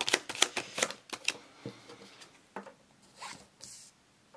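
Tarot cards being shuffled and handled: a fast run of card clicks in the first second or so, then sparser clicks and a few soft slides and rustles.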